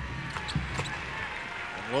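Crowd noise in a basketball arena, with a few short knocks of the ball bouncing on the hardwood court.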